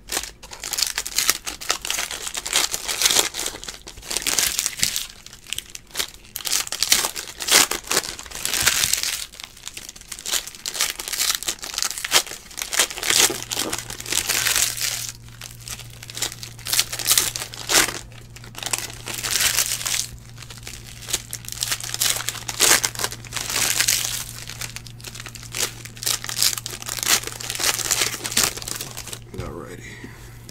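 Foil wrappers of Panini Chronicles baseball card packs crinkling and tearing as they are ripped open by hand, in repeated irregular bursts. A low steady hum comes in about halfway.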